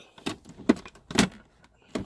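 A few sharp plastic knocks and clicks as a removed pickup center console is handled and turned over.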